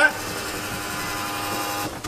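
Aftermarket inline electric fuel pump feeding the trunk-mounted fuel cell of a turbocharged Nissan 350Z, humming steadily with the ignition on before the engine is started, then cutting off suddenly near the end.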